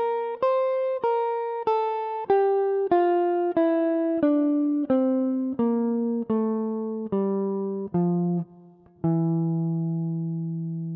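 Gibson ES-137 Custom semi-hollow electric guitar playing the E locrian scale in fifth position, one clean picked note at a time, about one and a half notes a second. It climbs briefly, then steps down the scale. After a short break near the end, a final low E is picked and left to ring.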